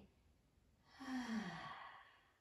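A woman's audible, sighing out-breath about a second in, falling in pitch as it fades. It is a deliberate relaxing exhale in a yoga breathing cue.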